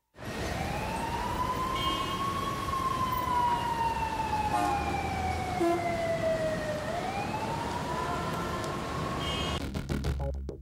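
A siren wailing slowly: its pitch climbs for about two seconds, sinks gradually over the next four, then begins to climb again, over a low rumble. A beat starts just before the end.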